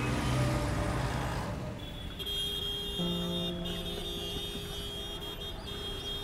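A city bus passing, heard as a swell of engine and road noise that fades by about two seconds in, under steady held music notes.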